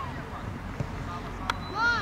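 A football being kicked: a short sharp knock about halfway through. Near the end, a short shouted call from a voice on the pitch, with faint voices in the background.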